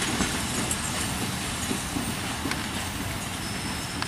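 Indonesian-built PT INKA broad-gauge passenger coaches rolling away along the track: a steady rumble of wheels on rail, with a few faint clicks.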